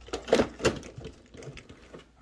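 The body shell of a radio-controlled lowrider being set onto its chassis and pressed into place, giving a few sharp clicks and knocks, the two loudest close together in the first second.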